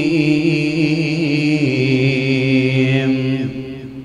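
A man's voice reciting the Quran in a long, held melodic note, its pitch wavering slightly. The note ends about three and a half seconds in and dies away with a short echo.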